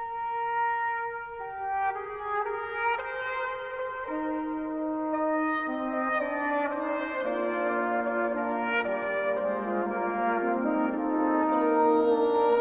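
A Reformation-era polyphonic piece on sustained brass-like wind instruments begins from silence. One part starts alone and the others enter one after another, each lower than the last, until several parts sound together. A few faint clicks are heard near the end.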